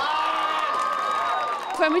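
Voices cheering and shouting to celebrate a goal, with a long high held shout that tails off about a second and a half in.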